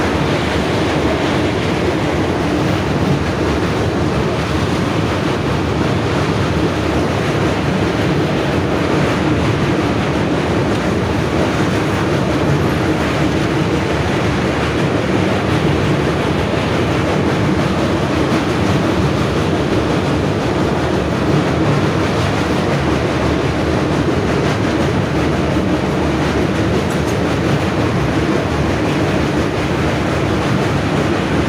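Passenger train running at speed across a steel truss bridge, heard at an open doorway: a steady rumble and clatter of wheels on the rails, with rushing air.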